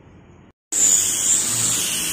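Hand-held electric angle grinder fitted with a sanding pad, running and sanding the face of a kamper-wood door: a loud, steady high whine over a rasping hiss. It starts abruptly under a second in.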